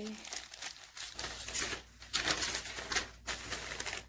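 Glossy advertisement paper crinkling and rustling in irregular handfuls as it is folded and wrapped tightly around a small rock by hand.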